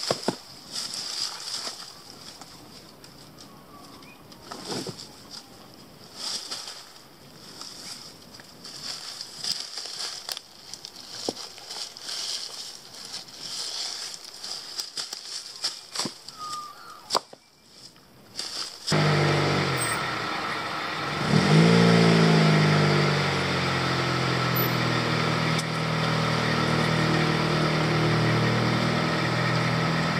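A few sharp snaps and rustles of bamboo being cut and handled in undergrowth. Then, about two-thirds of the way in, a 1999 Honda CR-V's four-cylinder engine comes in suddenly, revs up and runs steadily as the car drives off.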